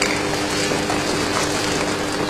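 Steady background hum with a few fixed low tones over an even hiss.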